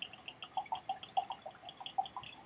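Whisky pouring from a small 50 ml sample bottle into a tasting glass: a quick, irregular run of small glugs and drips.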